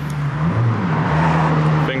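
A car engine running with a steady low hum that wavers in pitch about half a second in.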